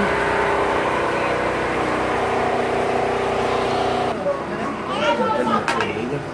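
Steady mechanical hum of a running motor or engine, holding several fixed tones, that cuts off suddenly about four seconds in; people's voices chattering follow.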